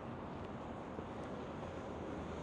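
Steady city street background noise: an even, low rumble and hiss of distant traffic.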